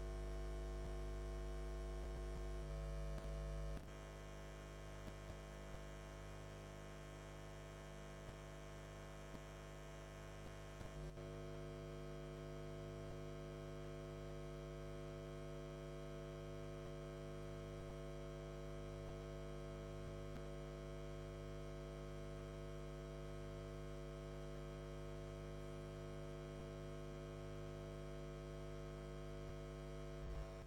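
Steady electrical mains hum, a stack of even buzzing tones on an otherwise silent audio feed, dropping slightly in level about four seconds in.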